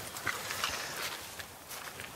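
A few faint footsteps on gravel as a person climbs out of a car and stands up.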